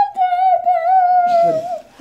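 A high-pitched voice holds one long note, wavering slightly and sliding a little lower, then stops just before the end.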